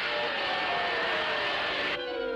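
A steady rushing hiss that starts abruptly and lasts about two seconds, with faint held tones underneath: a cartoon sound effect.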